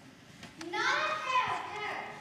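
Speech only: a child's high voice delivering a stage line, starting just over half a second in.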